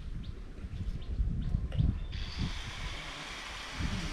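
Wind rumbling on the microphone, with a steady hiss setting in about halfway through.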